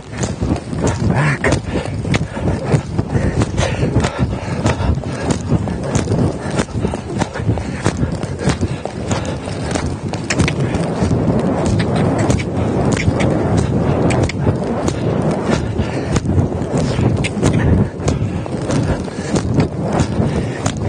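A horse under saddle moving around an arena: a quick run of hoofbeats on soft footing over a constant close-up rustling and rubbing, like riding movement picked up on a body-worn microphone.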